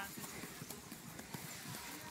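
Light, irregular taps of a football being touched and boots stepping on grass during a close-control dribble through cones, with faint voices in the distance.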